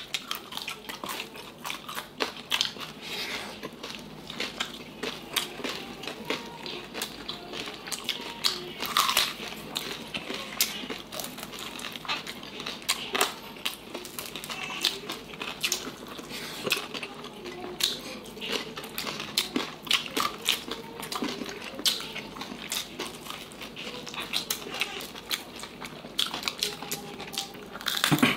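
Crispy fried pork knuckle (crispy pata) skin being bitten and chewed close to the microphone by two people: a continuous run of sharp crunches and crackles.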